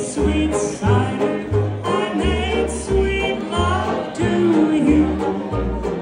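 A live jazz band plays an instrumental chorus with no vocal: banjo, a bass line thumping out about two notes a second, and a lead melody line that bends in pitch.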